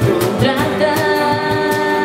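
Live acoustic band: a woman sings a long held note, from about half a second in, over strummed acoustic guitars and a cajón keeping a steady beat.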